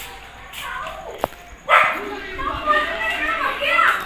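Children's voices: a sudden loud call a little before the middle, then continuous excited chatter, with a single sharp click shortly before the call.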